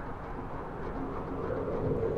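Steady low wind rushing, a wind sound effect, swelling slightly toward the end.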